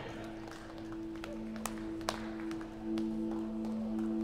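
Church worship band music starting: instruments hold two steady low notes as a sustained drone, with a few sharp clicks through the middle.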